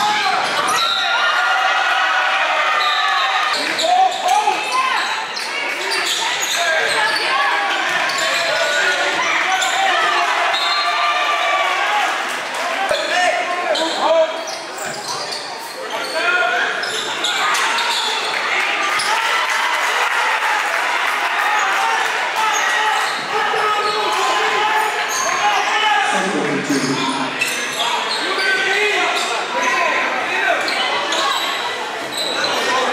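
Game sound of a basketball game in a large gym: a ball bouncing on the hardwood floor again and again, under the indistinct shouts and chatter of players and spectators.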